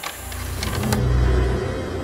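Movie sound effect: a hissing whoosh over a deep mechanical rumble that swells to its loudest about a second in, then gives way to music with held notes.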